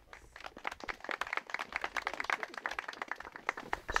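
A small group clapping by hand. The applause builds about half a second in and stops just before the end.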